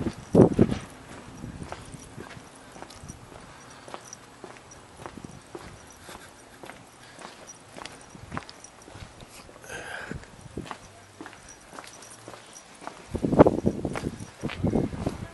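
Footsteps of a person walking on a paved sidewalk, steady at about two steps a second. Louder low rumbling comes briefly at the start and again near the end.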